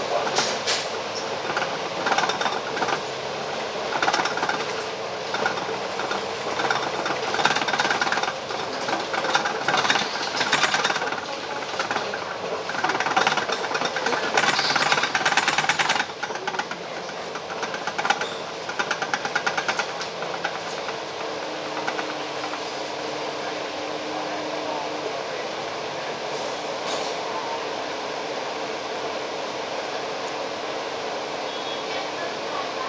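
Inside a Volvo Olympian double-decker bus on the move: the engine runs under a loud, fast rattling of the body panels and windows. About halfway through the rattling dies down to a steadier running noise, with a few more rattles after that.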